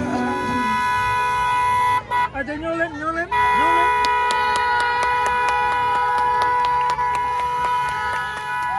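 A car horn held down in long steady blasts. It breaks off for about a second, where voices are heard, then sounds again without a break to the end, with a fast regular ticking over it in the second half.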